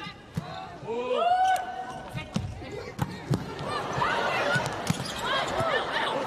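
Indoor volleyball court sounds: athletic shoes squeaking on the court floor and a volleyball knocking on the floor several times, over crowd noise in the arena that grows louder in the second half.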